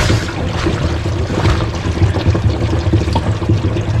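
Water pouring steadily into an RV fresh water tank as it is refilled, a continuous rushing trickle over a low steady hum.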